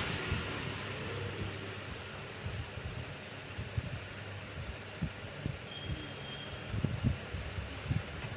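Room noise with a steady low hum, broken by irregular soft low knocks from handling. A brief faint high tone comes about six seconds in.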